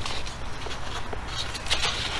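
Cardboard box and its packing being handled while it is opened: soft rustling with scattered light clicks and scrapes, more of them in the second second.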